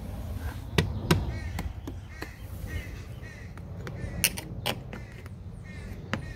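Sharp taps of an inspector's probing tool against the house's wall or trim, with a pair of strikes about a second in and another pair a little past the middle. A bird calls repeatedly in the background between the taps.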